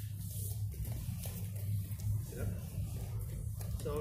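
A steady low hum underneath faint rustling and shuffling of people moving on a grappling mat.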